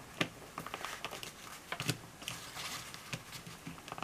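Small hard plastic parts clicking and tapping as a plastic flame accessory is pushed and worked into a toy campfire base: scattered light clicks, with two sharper ones just after the start and about two seconds in.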